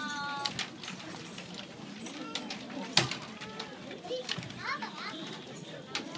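Murmur and chatter of many young children between pieces, with small clicks and knocks as they pick up their keyboard instruments, and one sharp knock about halfway through.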